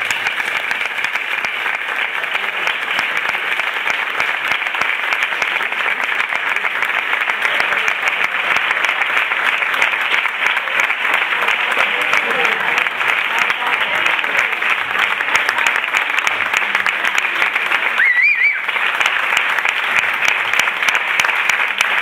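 An audience applauding: dense, steady clapping that dips briefly near the end, with a short high tone at that point.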